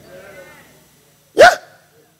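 Speech only: after a pause of about a second, a man says one short "Yeah?" with a rise and fall in pitch.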